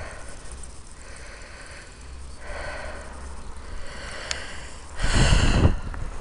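Heavy breathing of a person out of breath from climbing uphill, with a loud breath about five seconds in.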